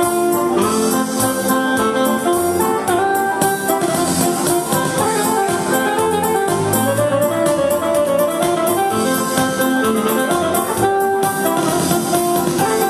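Lively instrumental dance music with a steady beat and a running melody line.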